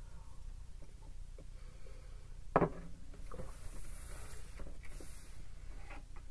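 Quiet tabletop handling: a ceramic mug set down on a wooden table with a single knock about two and a half seconds in, among faint taps. Soft sliding of tarot cards over the tabletop follows.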